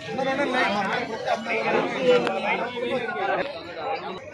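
Several men talking over one another: continuous chatter of voices.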